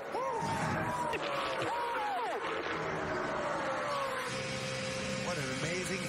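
Men whooping and yelling in celebration of a race win, their voices sweeping up and down in pitch. A steady engine drone runs underneath and comes to the fore in the second half.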